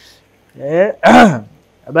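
A man clearing his throat: a short voiced sound, then a louder rasping one whose pitch rises and falls, before he starts to speak near the end.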